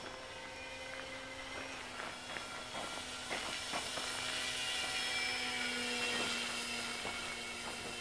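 Skytrainer 400 electric RC plane's motor and propeller whining steadily in flight. It grows louder about five to six seconds in as the plane passes closer, then eases off.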